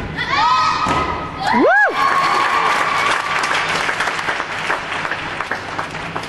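Crowd cheering and applauding, with a loud rising-and-falling whoop from one voice just under two seconds in. The clapping fades toward the end.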